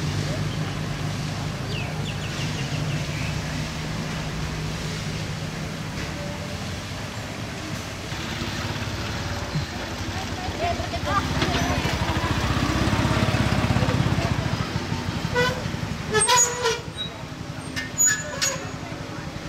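Voices of people talking around the camera, over a steady low hum that fades after about six seconds; a few short, louder sounds come about two seconds before the end.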